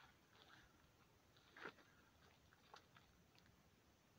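Near silence: faint outdoor ambience with a few soft, brief clicks or scuffs, the clearest a little under two seconds in.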